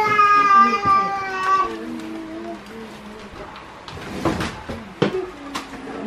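A long, drawn-out high-pitched cry lasting about two seconds, holding nearly one pitch and sinking at the end, followed by quieter sounds and a few light knocks and rustles.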